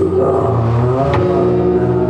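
Live rock band with loud, distorted electric guitar holding a sustained chord that wavers and bends in pitch during the first second. A single sharp drum hit comes about a second in.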